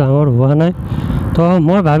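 A man talking steadily while riding a motorcycle. His voice breaks off for about half a second a little under a second in, leaving only the motorcycle's engine and wind noise.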